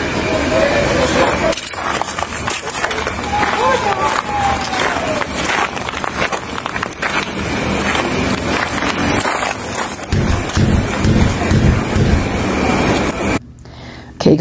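Outdoor audio from a police body-worn camera's microphone at night: a noisy background with distant voices. From about ten seconds in, low thumps come about twice a second as the wearer moves, and the sound drops off suddenly just before the end.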